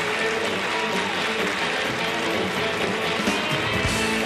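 Live country-rock band playing an instrumental passage led by electric guitars, with bass and drums, and a heavy hit just before the end.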